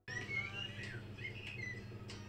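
Small birds chirping in short rising and falling notes over a steady low hum of kitchen room tone, with a couple of light clicks.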